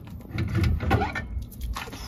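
Airstream trailer brake drum being slid off the hub and axle spindle, giving a run of short metal clicks and scrapes.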